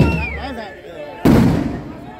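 A single sharp firecracker bang a little over a second in, dying away quickly, over men's voices shouting.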